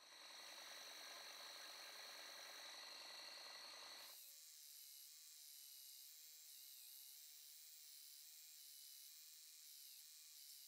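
Faint belt sander running, with a birch burl wood block held against the moving sanding belt; the sound drops even lower about four seconds in.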